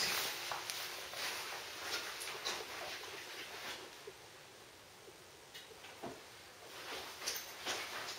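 Faint rustling and a few light clicks and knocks of things being handled, quietest in the middle.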